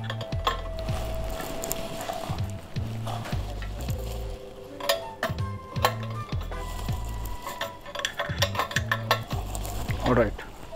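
Metal clinks and scrapes of a spanner working a brass pressure-gauge fitting tight on a stainless-steel soda maker tank: scattered sharp ticks, with a few brief ringing tones.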